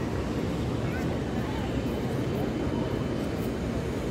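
Steady low rumble with faint distant voices of people in the background.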